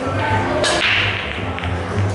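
A pool cue strikes the cue ball once with a sharp crack about two-thirds of a second in, over background music with a steady beat.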